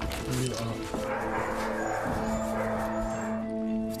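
Several puppies yapping and whining over background music with long held notes.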